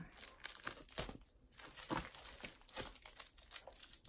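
Packaging on a three-pack of folders crinkling and tearing as it is opened by hand, in irregular crackles.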